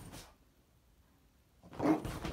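French bulldog giving a short, loud growl near the end, worked up in a fit of playful zoomies.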